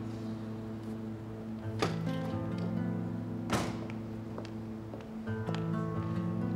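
Background drama score of held, sustained notes that shift in pitch every second or two. Two sharp knocks cut through it, about two seconds in and again at three and a half seconds.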